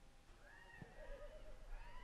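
Faint, distant voices calling out across a soccer field, short rising-and-falling shouts, with one soft thump just under a second in.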